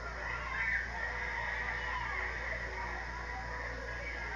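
Children's high-pitched voices giggling and squealing in short, wavering bursts, heard from an old home video played back and re-recorded, over a steady low hum.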